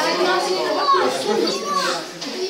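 Overlapping chatter of many voices, adults and children's high voices mixed, with no single speaker standing out.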